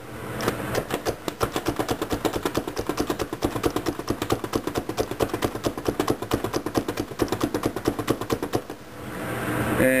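Hand-pressed plunger food chopper being pumped fast, its blades clacking about five times a second as it chops onion, cilantro and jalapeño. The clacking stops about a second before the end.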